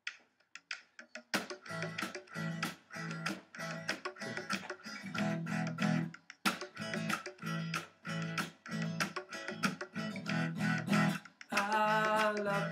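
Acoustic guitar strummed in a steady, even rhythm, starting about a second in after a few light strokes: the instrumental introduction to a sung folk song.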